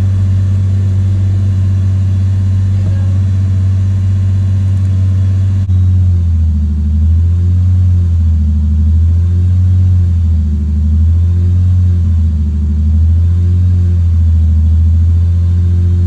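Lexus IS350's 3.5-litre V6 idling high, around 2,000 rpm, just after a larger Tundra throttle body has been fitted. From about six seconds in, the idle hunts, its pitch rising and falling every couple of seconds while the engine adjusts to the new throttle body.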